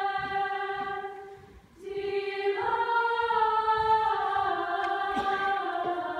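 Mixed choir singing held chords. The chord fades away about a second and a half in, and after a brief pause the voices come back in and move through new sustained chords.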